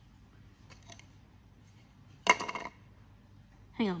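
Sharp click of a plastic sheep ear tag being snapped into a clear plastic tag cartridge, with a short ring, about two seconds in; faint handling clicks of tag and cartridge come before it.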